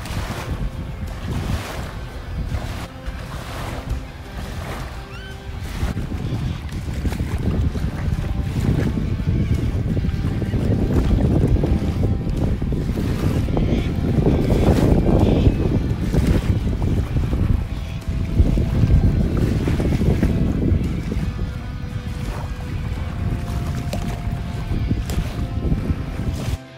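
Wind buffeting the microphone, a low rumble that swells to its strongest about halfway through, over small waves lapping on the water.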